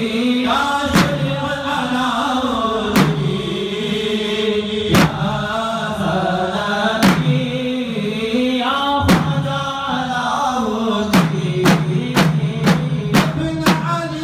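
Male voices chanting Sufi dhikr to a drum struck about once every two seconds; about eleven seconds in, the drum strikes quicken to about two a second.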